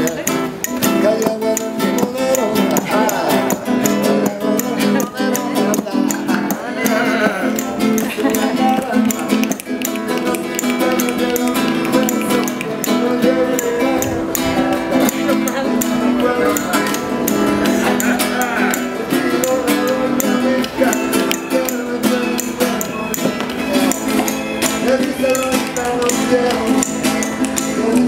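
Live flamenco-style music: a nylon-string Spanish guitar playing a rhythmic instrumental passage with sharp percussive hits throughout, and voices calling out over it at times.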